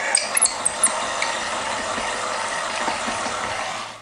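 Electric stand mixer running, its beater creaming softened butter, cream and sweetener in a glass bowl: a steady whirring with a few light high ticks in the first second. It cuts off just before the end.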